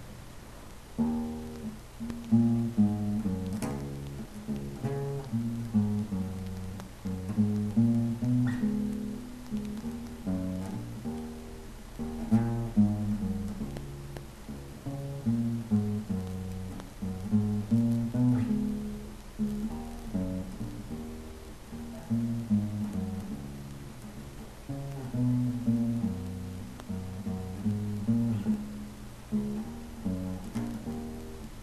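Acoustic bass guitar plucked in a low, repeating bass line riff that keeps cycling around the same phrase.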